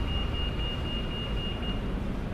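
Low, steady rumble of a moving bus, with a thin, steady high whine that stops near the end.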